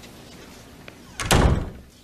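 A glass-paned door slamming shut once, about a second and a half in, with a low boom that dies away quickly.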